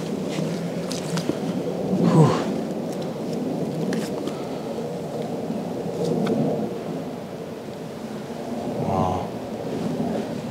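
Steady low rumble of an airplane passing overhead, loud, with a brief louder sound about two seconds in.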